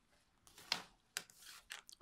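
Faint, brief rustles and light clicks of hands handling a soft tape measure and laying it across a crocheted garment.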